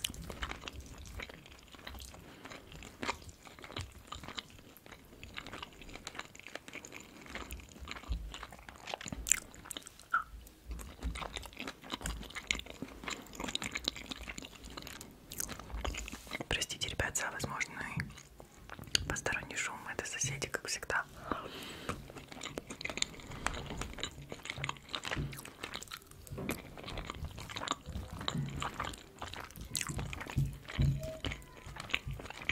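Close-miked chewing and biting of shrimp fried rice, with the clicks and scrapes of a metal fork digging into the rice in a hollowed pineapple shell.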